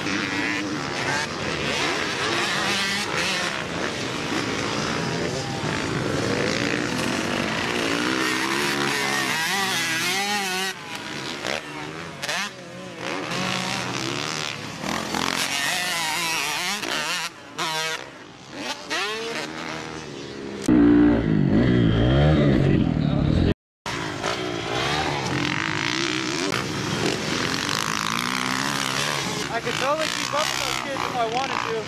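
Several dirt bikes running on a motocross track, their engines revving up and down as they ride. About two-thirds through comes a louder, deeper stretch, which ends in a brief sudden dropout.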